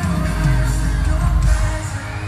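Live pop music played loud over an arena sound system, heavy in the bass, with a singing voice over it.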